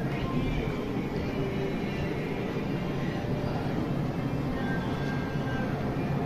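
Steady low hum and hiss of background room noise, with a few faint, brief tones over it.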